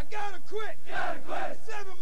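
A platoon of Marine recruits shouting a counting cadence together, a loud chanted call and response with about four syllables a second.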